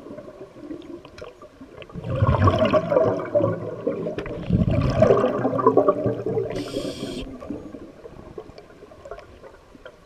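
Scuba diver breathing underwater through a regulator: two long bursts of exhaled bubbles rumbling and gurgling, then a short hiss of inhaled air from the regulator a little past the middle.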